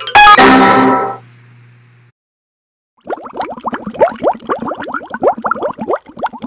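Outro music sting: a descending run of notes ends in a loud chord that rings and fades over about a second. After a short silence, a fast run of short rising chirps starts about three seconds in.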